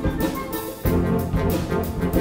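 Concert wind band of clarinets, saxophones and brass playing a pop arrangement. The sound thins out briefly about half a second in, then the full band comes back in, low notes included, just under a second in.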